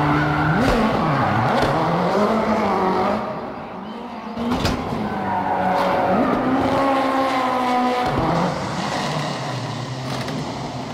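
Ken Block's Ford Fiesta gymkhana car, a turbocharged four-cylinder rally car, revving up and down hard while drifting, with tyres squealing and skidding. The revs drop away about three and a half seconds in, a sharp crack follows, and the engine climbs again for several seconds before easing off near the end.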